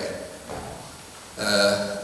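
A man's voice at a lectern microphone: a pause, then a drawn-out voiced sound about one and a half seconds in, just before he speaks on.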